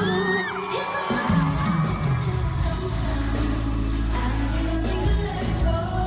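Live pop concert heard from the arena crowd: a woman singing into a microphone over the band, with heavy bass coming in about halfway, and fans cheering.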